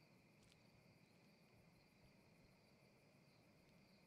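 Near silence with a very faint, steady chirping of crickets in the background.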